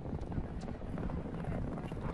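A field of racehorses galloping away from the starting gates: a dense, low, steady mass of hoofbeats on a sand-and-fibre track.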